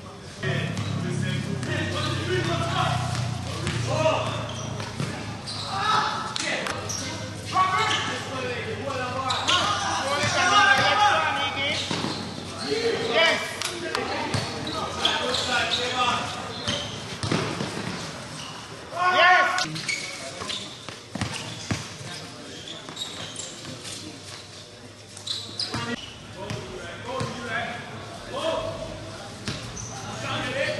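A basketball bouncing and players' footsteps during a game, with players and spectators calling out and talking.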